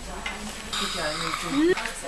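A steady hiss for about a second in the middle, under faint low voices.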